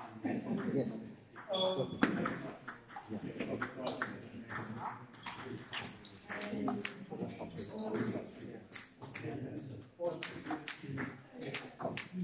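Table tennis balls clicking sharply and irregularly off bats and tables, with indistinct chatter of voices.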